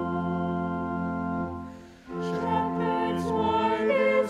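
A small mixed vocal ensemble of four voices singing a Christmas carol. One sustained phrase fades to a short breath break about two seconds in, then the next phrase begins.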